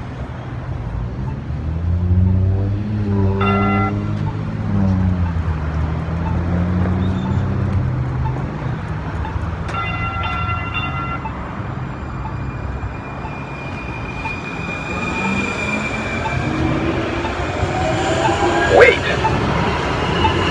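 City street traffic at an intersection: a steady low engine rumble, with a heavy vehicle passing about two to five seconds in, its pitch rising and then falling. Two short pitched tones, a horn or bell, sound about three and a half and ten seconds in. Near the end, engines rev up in rising whines as vehicles pull away.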